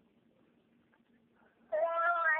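A high-pitched child's voice comes through a phone's speaker near the end, long-drawn and sing-song, after a quiet stretch with only a faint low hum.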